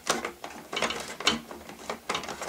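Screwdriver backing a screw out of the plastic hull of a vintage Kenner Slave One toy, giving a run of irregular ratchet-like clicks.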